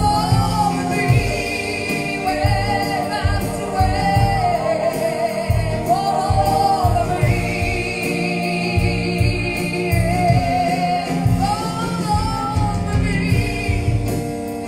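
A gospel worship song: a woman singing long held notes with vibrato over sustained keyboard chords and a steady low beat.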